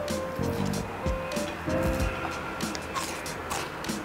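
Crispy skin of a pan-fried fish fillet crackling as it is torn apart by hand, a scatter of small crunches over background music.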